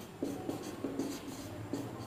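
Marker pen writing on a whiteboard: about three short strokes.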